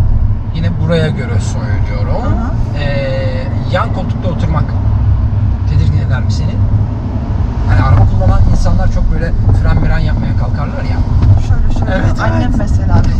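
Voices talking over the steady low rumble of road and engine noise inside a moving car's cabin.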